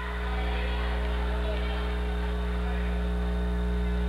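Steady electrical mains hum on the broadcast audio track, with a faint murmur of voices beneath it.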